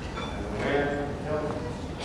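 A man's voice, with a light clip-clop-like tapping.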